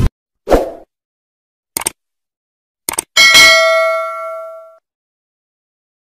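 Subscribe-button animation sound effects: a soft thump about half a second in, two quick double mouse-clicks, then a bright bell ding about three seconds in that rings out for about a second and a half.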